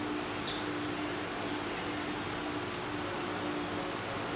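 Steady low background hum, with faint brief sounds of a banana leaf being handled, one about half a second in.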